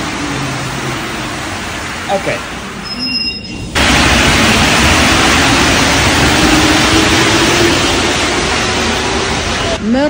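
Paris Métro train running along the platform: a steady rush of running noise that jumps abruptly louder about four seconds in and stays loud, with a faint low hum underneath.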